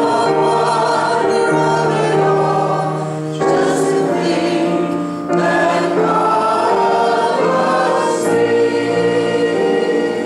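Church congregation singing a gospel chorus together, with long held notes; the sound dips briefly where new phrases begin, about three and a half and five seconds in.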